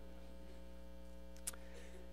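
Steady electrical mains hum, with one short faint click about one and a half seconds in.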